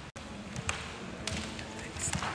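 Footsteps on a hard gallery floor: two sharp taps about half a second apart over a murmur of voices in the room.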